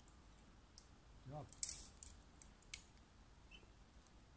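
A short grunt-like vocal sound, then a brief scrape and a few sharp separate clicks, typical of rope and climbing-gear handling.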